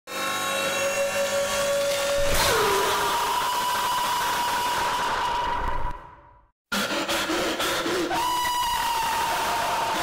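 Loud, heavily distorted noise with held whistle-like tones. The pitch drops about two seconds in, and the sound fades out and cuts off briefly just after six seconds before starting again.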